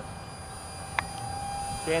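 Nitrocharged Pulse 30 mm electric ducted fan of a micro RC jet in flight, a steady whine of several high tones over faint hiss. A single sharp click about halfway through.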